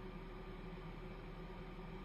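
Faint, steady room tone: a low hum and an even hiss, with no distinct events.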